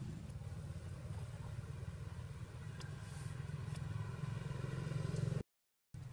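Steady low rumble of a motor vehicle's engine running, with faint pitched engine tones rising through the middle and a couple of small clicks, cut off abruptly near the end.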